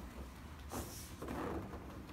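Brief rustle and shuffle of a person lying down on a padded chiropractic treatment table, one short swish a little before the one-second mark, over a low room hum.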